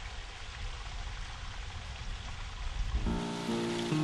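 Spring water running down an open channel, a steady rushing hiss with a low rumble. About three seconds in, background music with sustained tones comes in over it.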